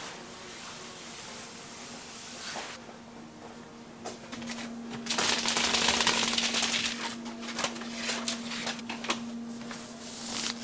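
A large roll of stiff paper being unrolled and handled on a workbench, rustling and crackling, loudest for a couple of seconds in the middle, with scattered crackles on either side. A faint steady hum runs under it from about four seconds in.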